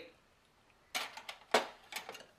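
Metal kitchen utensils clinking and knocking against a ceramic bowl, a quick series of clinks in the second half.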